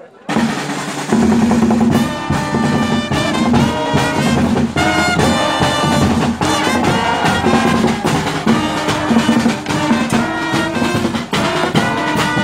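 A school marching band strikes up, with bass drums, snare drums and surdos keeping a steady beat under trumpets and other brass. It enters just after the start and is at full volume by about a second in.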